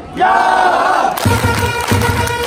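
Baseball cheering-section fans shouting a cheer together, then, about a second in, the cheer band's trumpets and drums strike up, with the drums beating under held trumpet notes.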